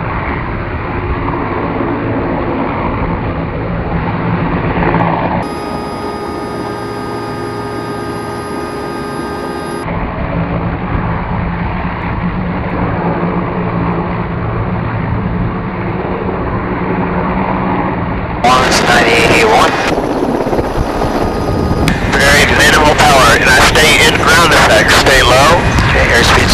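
Mil Mi-17 helicopter's twin turboshaft engines and main rotor running at takeoff power as it lifts off and climbs, a steady hum under the noise, broken by cuts between camera positions. About 18 seconds in, and again near the end, the rotor and airflow noise turns much louder and rougher.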